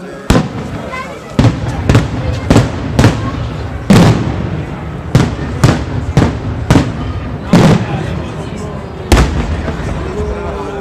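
Daytime fireworks: aerial shells bursting overhead in an irregular string of loud bangs, about a dozen in ten seconds, each followed by a trailing echo.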